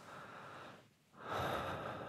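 A man breathing audibly: one breath fades out about three-quarters of a second in, then a louder, deeper breath starts just after a second in.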